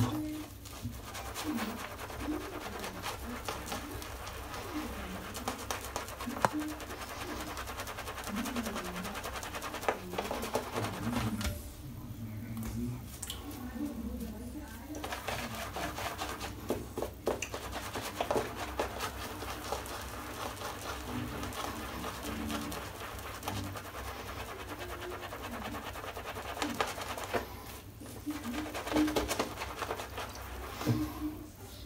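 Two-band badger shaving brush swirled over a lathered face, building shaving-soap lather: a wet, squishy crackling that stops for a few seconds twice when the brush is lifted.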